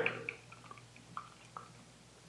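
Block of mild cheddar cheese being grated on a handheld flat stainless grater over a plate: a few faint, short scrapes about half a second apart.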